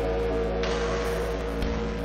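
Improvised ambient electric-guitar soundscape with looped, sustained tones over a steady low hum. A hissing wash of noise swells in under a second in.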